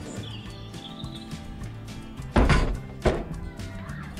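Background music, with two loud knocks about half a second apart just past the middle: small plastic stacking tables knocking against the van's floor and door as they are lifted out.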